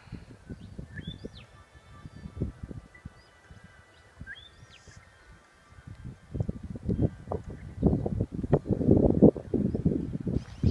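Wind buffeting the microphone in irregular gusts that get much louder over the last few seconds, with birds chirping and calling in short rising notes behind it.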